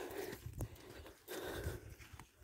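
Footsteps of someone walking on a dirt farm track, with soft thuds about once a second.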